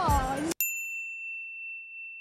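An excited voice cut off sharply about half a second in, followed by an added ding sound effect: a single clear bell-like tone whose brighter overtones fade quickly while the main note rings on steadily over otherwise silent sound.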